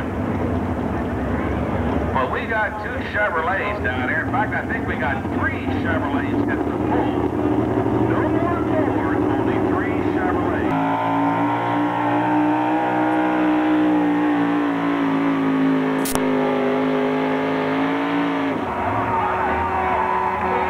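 A supercharged pulling-truck engine runs under an announcer's voice on the public-address system. About halfway through, a new engine sound comes in abruptly: a strong, nearly steady tone that rises slightly and then sags. It cuts off shortly before the end.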